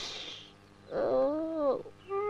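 A short breathy hiss, then about a second in a single drawn-out, wavering cry that rises and falls in pitch.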